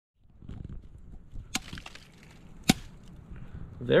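Small multitool hatchet chopping into a weathered wooden stump: two sharp strikes a little over a second apart, the second louder.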